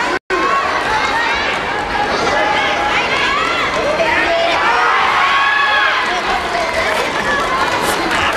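Crowd of spectators shouting and calling out over one another, many voices at once. The sound cuts out completely for a split second just after the start.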